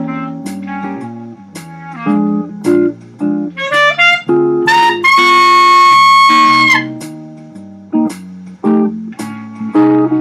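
Clarinet playing a Portuguese tune in a blues style over a guitar accompaniment. About three and a half seconds in it plays a quick rising run, then holds one long high note for about two seconds.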